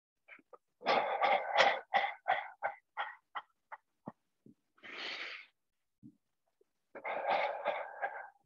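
A man breathing hard through the mouth while shaking his body loosely: a loud burst of quick, forceful exhales about a second in that falls into a fading run of short puffs about three a second, then one long breath, then another burst of breathing near the end.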